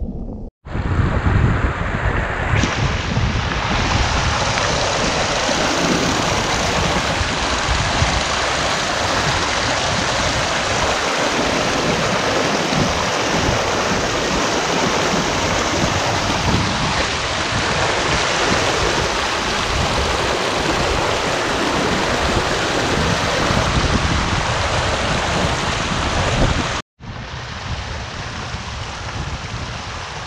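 Fast, shallow mountain stream rushing over rocks: a loud, steady rush of water with a low rumble. It cuts out for an instant about half a second in and again a few seconds before the end, and is quieter after the second break.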